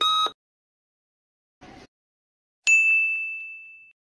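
Electronic quiz-timer sound effects: the last short beep of a once-a-second countdown right at the start, then about two and a half seconds later a single bright ding that fades over about a second. The ding is the answer-reveal chime.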